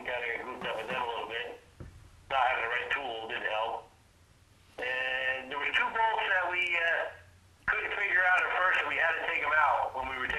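Speech only: a man talking in phrases with short pauses over a telephone line, the voice thin and cut off above the middle range.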